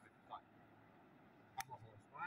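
Near silence: a faint steady hiss, broken by a brief voice sound about a third of a second in and a single sharp click a little before the end.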